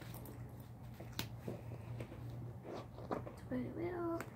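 Faint clicks and handling noise of a plastic mascara tube being turned in the hands and uncapped, the sharpest click about a second in, over a low steady hum.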